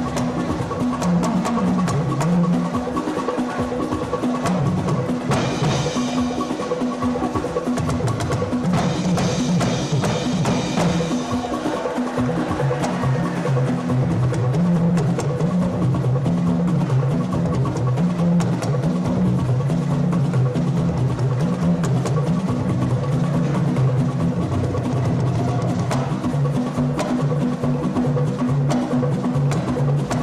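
Live jùjú band music: dense, busy percussion and drums over a bass line that steps up and down.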